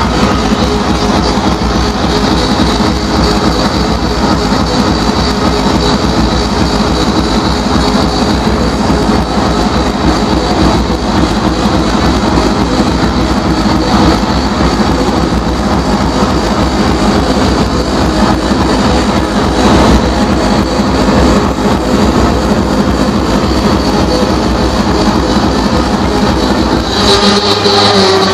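Loud hardcore dance music played over an arena sound system, with heavy, dense bass filling the recording.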